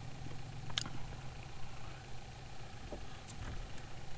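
Steady low motor hum with a faint higher tone running over it, and a light click about a second in from fishing tackle being handled.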